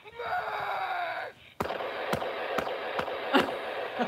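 Sound effect from a toy Hulk fist: a roaring cry that falls in pitch for about a second. After a brief pause comes a thin, clattering crash noise with sharp knocks, from a small toy speaker.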